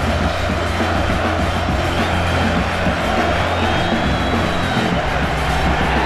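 Background music with a steady bass line, over a football stadium crowd cheering.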